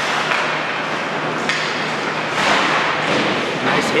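Ice hockey play on the rink: skates scraping across the ice with sticks and puck knocking, and a sharp thud near the end as a player is hit into the boards.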